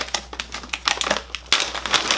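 Package of Loacker Quadratini wafers being torn open by hand: the wrapper crackles in quick, irregular bursts, denser and louder from about one and a half seconds in.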